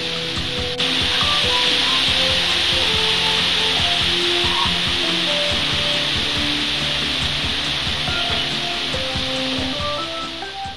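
Heavy rain falling as a steady, dense hiss, with music playing faintly under it. A click just under a second in, after which the sound gets louder.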